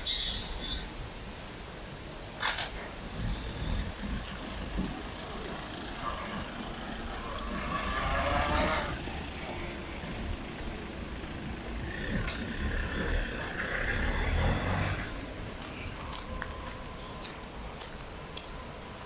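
Outdoor street ambience with a steady low rumble of traffic, swelling louder twice as vehicles pass, around eight and fourteen seconds in.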